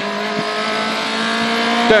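Toyota Corolla RWD rally car's engine heard from inside the cabin, pulling in fourth gear with a steady, even note.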